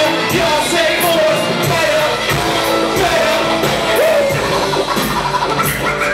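Live band music with drums and cymbals and electric guitar, a melody line sliding between notes over the top.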